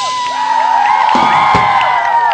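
Crowd of children cheering and whooping, many overlapping voices rising and falling, as a crash cymbal rings out at the end of a drum kit piece.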